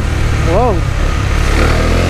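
Husqvarna Svartpilen 401's liquid-cooled single-cylinder engine running steadily as the bike rides along, heard from the rider's seat.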